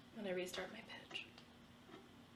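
A soft, breathy woman's voice: a brief hum or sigh about half a second long that falls slightly in pitch, followed by a couple of fainter breaths.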